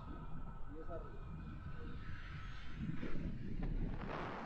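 Wind rushing over the action camera's microphone in paraglider flight, a steady low rumble with hiss that grows in the second half. A faint voice comes through briefly about a second in.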